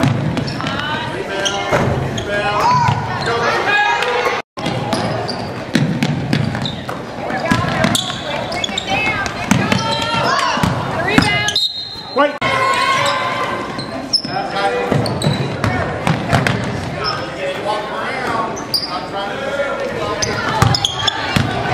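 Basketball bouncing on a hardwood gym floor amid people's voices, echoing in a large gym. The sound cuts out briefly twice.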